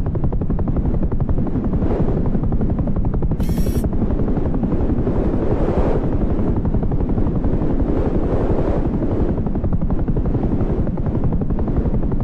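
Helicopter in flight, with the fast, steady beat of its rotor. A brief high hiss about three and a half seconds in.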